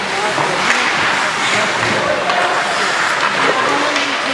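Indoor ice rink during a hockey game: a steady wash of skates on the ice, under many overlapping spectators' voices talking and calling out.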